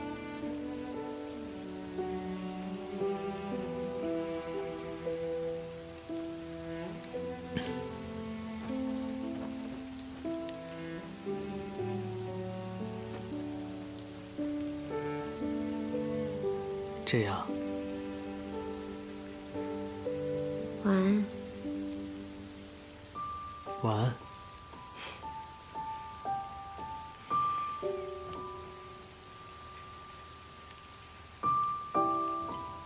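Steady rain over soft, slow background music of held chords, with a few short sounds about halfway through and later on.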